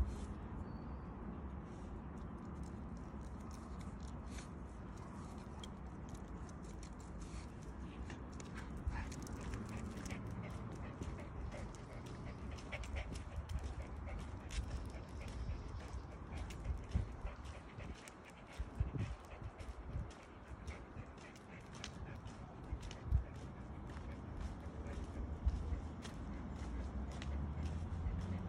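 A leashed dog and its walker moving over asphalt: scattered small clicks and taps of steps and claws over a steady low rumble of handling noise on the phone's microphone, with a few stronger low thumps in the second half.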